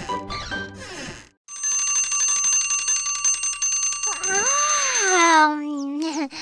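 A song ends about a second in. Then a cartoon twin-bell alarm clock rings, a steady fast-rattling bell lasting about four seconds. Near its end a long sleepy yawn rises and falls in pitch and trails off low as the ringing stops.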